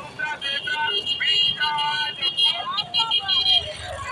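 Busy street noise: loud, high-pitched calling voices of passersby over motorbike traffic.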